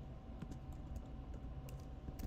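Computer keyboard being typed on: a few light key clicks, spread unevenly, as a short command is entered.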